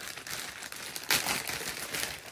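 Packaging crinkling and rustling as an item is handled and unwrapped, with a louder rustle about a second in.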